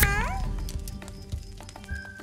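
Squeaky, cat-like cartoon voice of a talking box character: one short call gliding down in pitch about half a second long, right at the start, then soft background music.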